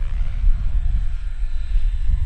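Radio-controlled helicopters running, their steady whine faint under a heavy low rumble.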